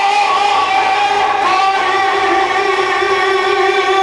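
A man's solo voice reciting a naat, held on one long sung note through a microphone. Near the end the note breaks off into a falling glide.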